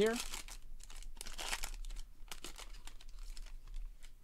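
Foil wrapper of a trading-card pack crinkling in several short bursts as it is torn open by hand and the cards are pulled out.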